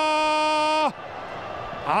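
A male football commentator holding one long shouted note at a steady pitch as he calls the goal and the score, cut off about a second in; after it only a quieter, even background noise remains.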